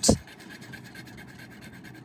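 A silver pendant rubbed back and forth on a black jewelry testing stone, a quiet, fast run of scratching strokes that lays down a metal streak for acid testing for sterling silver.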